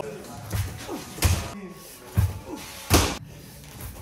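Several sharp smacks of baseballs hitting leather gloves and netting in an indoor batting cage, the loudest about three seconds in, over voices and background music.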